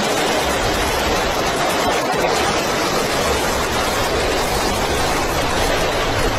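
Large flames rushing steadily: an even, unbroken noise with no separate shots or voices.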